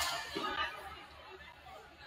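Indistinct chatter of players and spectators in a school gymnasium, dying down over the first second to a low murmur.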